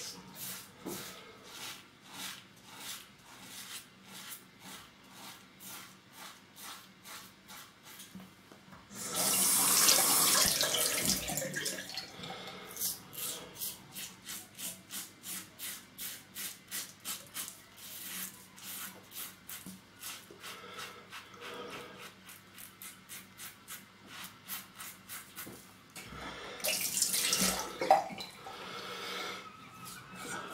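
Rockwell 6S double-edge safety razor with a Wilkinson Sword blade scraping through stubble under lather in short, quick strokes, about two to three a second, on an across-the-grain pass. Twice, about nine seconds in and again near the end, a tap runs for a few seconds to rinse the razor.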